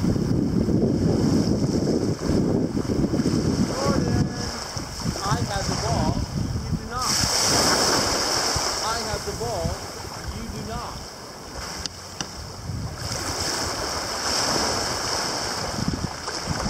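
Small waves breaking and washing over a pebble shore, with wind buffeting the microphone. Faint wavering calls come through about four to eleven seconds in.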